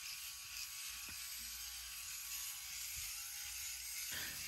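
Electric sheep-shearing handpiece running faintly and steadily as it cuts through thick matted wool, with a few faint clicks.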